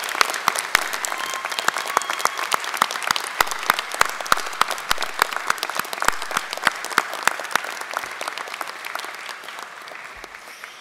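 Audience applauding, a dense stretch of many hands clapping that thins out and fades over the last couple of seconds.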